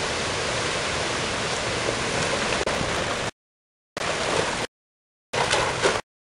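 Steady rushing noise of the storm, which cuts to dead silence twice from about three seconds in, with short bursts of the same noise between the gaps.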